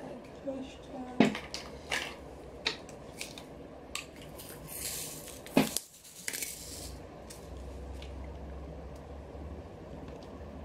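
Small sharp clicks and taps of an acrylic diamond-painting drill pen picking up resin drills and pressing them onto the sticky canvas, spaced about a second apart, with a brief rustle a little before the middle.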